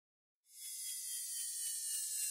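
About half a second of silence, then a faint hissing whoosh with a few thin, slowly falling tones in it that swells gradually. It is an intro-title sound effect.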